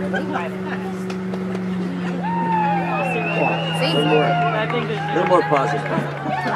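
Several voices of players and spectators calling and chattering at a field hockey game, busier from about two seconds in, with one long high-pitched shout in the middle. Under them is a steady low hum that drops in pitch about five seconds in.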